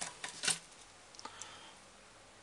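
A few short clicks and light knocks from a thick, stiff coaxial cable and its metal connector being handled on a table, the loudest about half a second in and a couple of fainter ones a little after a second.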